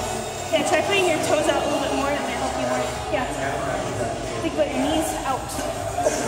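Indistinct voices talking in a large, echoing gym hall over a steady low hum.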